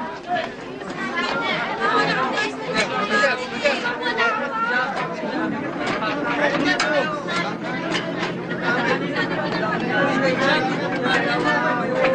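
Several voices chattering at once, an indistinct babble with no clear words. A steady low hum joins in a little past halfway.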